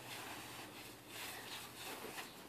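Faint rubbing and scraping of gloved hands scooping and packing snow, with a few soft scrapes about a second in and near the end.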